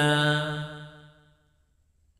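A man's chanting voice holds the last syllable of a paritta line on one steady note, then fades away by about a second and a half in.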